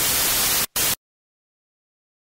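Loud burst of TV-style static hiss, a glitch sound effect on the end logo. It drops out for an instant and cuts off abruptly about a second in.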